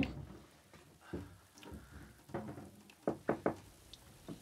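Soft knocks, then three quick raps on a window pane near the end, as from knuckles tapping the glass from outside.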